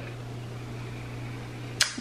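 Room tone in a small room: a steady low hum with a faint even hiss, and a short click just before speech resumes near the end.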